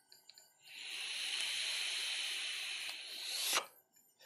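A steady hiss of air lasting about three seconds. It builds up gradually, then flares louder for a moment and cuts off suddenly.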